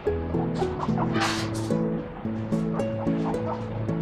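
A guinea pig squealing in a few short, high-pitched bursts about a second in, over background music: the begging call of a guinea pig that expects to be given vegetables.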